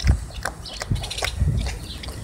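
Mother pit bull licking a newborn puppy: irregular wet clicking and smacking of her tongue and mouth, with a couple of dull thumps.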